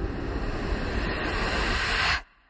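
Steady cinematic suspense drone from the trailer's sound design: a low rumble under an even wash of noise, holding level.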